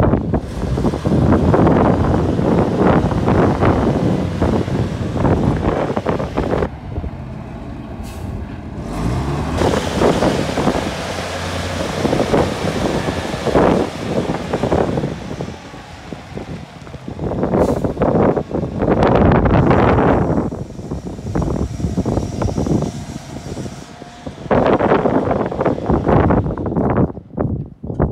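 Clark forklift with a hay squeeze attachment running as it drives and turns on a gravel road; the engine sound swells and drops several times.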